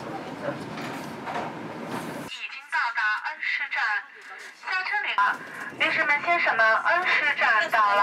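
Steady running noise of a moving train heard inside the carriage, cut off abruptly about two seconds in. A high-pitched voice then talks in quick bursts, louder than the train noise.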